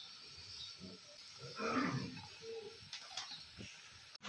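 Hot oil sizzling faintly in a wok where pithe are deep-frying, with a faint voice-like sound about halfway through.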